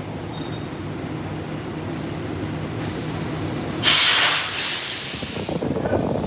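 A steady low mechanical hum. About four seconds in, a loud hiss cuts in and lasts about a second and a half.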